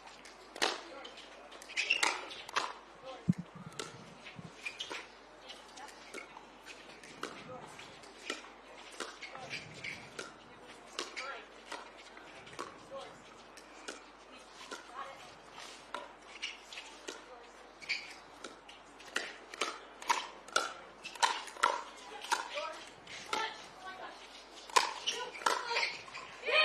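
Pickleball rally: paddles striking a hard plastic perforated ball again and again, each hit a short sharp pop, coming irregularly and at times in quick exchanges of several hits a second.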